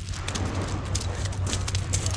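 Beach pebbles clicking and clattering in quick, irregular knocks as they are disturbed, over a steady low hum.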